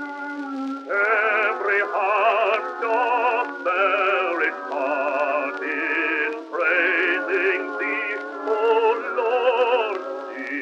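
Bass-baritone singing a hymn in operatic style with wide vibrato, on a 1917 acoustic recording: thin and boxy, with no deep bass. After a quieter first second, the voice sings several phrases separated by short breaks.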